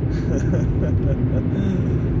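Steady road and engine noise heard inside a pickup truck's cab while cruising on a freeway, a constant low rumble.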